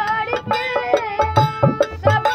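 Bhojpuri folk song: a boy singing over a harmonium's held reed notes, with a dholak drum beating a steady rhythm of sharp strokes and deep bass thumps.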